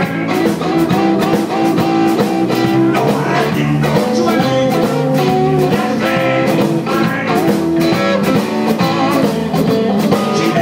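Live blues band playing, with electric guitar to the fore over a steady beat.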